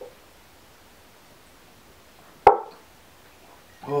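Shot glass set down hard on a table once, a sharp knock about halfway through that dies away quickly. Near the end a man lets out a gasping "Oh" after downing the shot.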